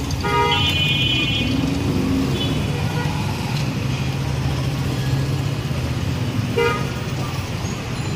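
Street traffic with engines running. A vehicle horn toots about half a second in and holds for about a second, then toots again briefly near the end.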